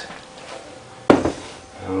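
A single sharp knock about a second in, dying away over about half a second, over quiet room tone.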